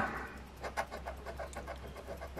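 A large coin scraping the tough scratch-off coating off a lottery ticket, in quick repeated strokes.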